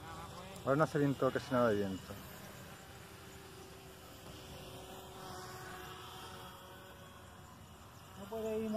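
Faint, steady buzzing of a small electric model aircraft's motor and propeller in flight, with a light whine that rises in pitch around the middle. A voice is heard briefly about a second in.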